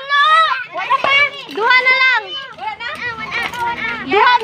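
Children's voices talking and calling out in high pitch, several at once.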